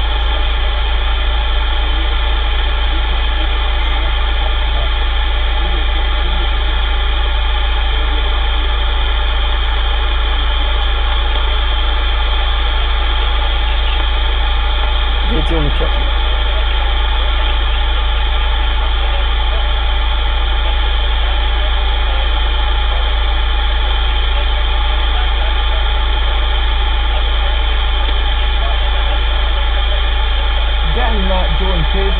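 CB radio receiver open on a quiet channel: a steady hiss with a loud low hum, no station coming through. A brief faint voice-like blip about fifteen seconds in.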